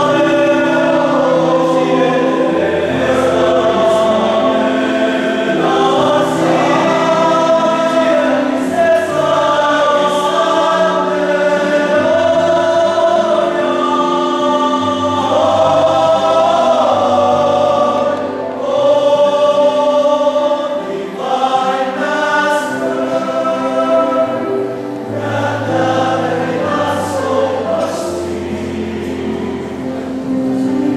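Male choir of seminarians singing a sacred song in several-part harmony, with long held chords and a low bass line.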